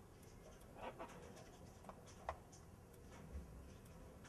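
Near silence: faint room tone with a few soft clicks, the sharpest a little after two seconds in.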